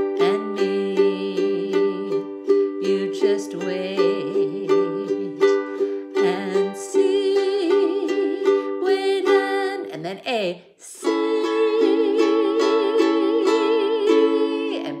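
Ukulele strummed in a down-down-up-up-down-up pattern, its chords ringing steadily as the song modulates up into the key of D. A short break about ten seconds in, then a new chord starts.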